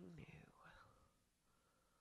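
Near silence: a faint spoken word trails off at the start, then nothing more.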